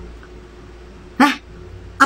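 One short vocal sound about a second in, over faint steady room noise.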